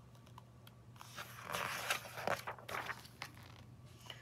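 Pages of a picture book being turned by hand: a few short, faint paper rustles and flicks in the middle.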